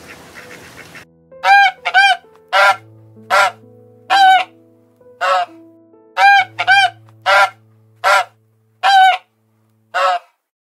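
A black swan honking: about a dozen short, loud calls, some in quick pairs, start about a second in over soft piano music.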